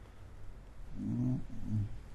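Two short, low hums or murmurs from a man's voice, the first about a second in and a briefer one near the end, with no words.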